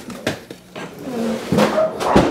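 A few knocks and clatter from a refrigerator's freezer drawer as a chilled plate is taken out and the drawer is pushed shut.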